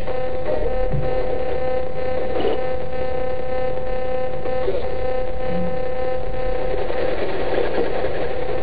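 Spirit box radio sweep giving a steady electronic hum over hiss, with a few faint brief blips.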